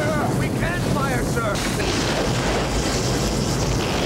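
Space-battle sound effects for a sci-fi toy film: a loud, steady rumble with a few short warbling glides in the first second and a half.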